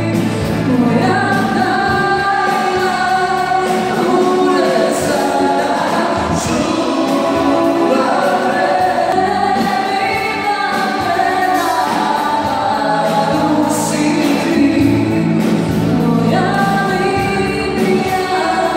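Live pop band playing a song with a singer carrying the melody over the accompaniment, continuous and steady in level.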